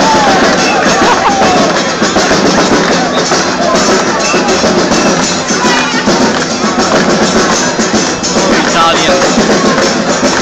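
Live street music with percussion playing loudly over the chatter of a large crowd.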